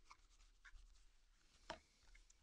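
Faint rustling and light ticks of a deck of oracle cards being mixed and slid about by hand, with one sharper tick at about 1.7 s.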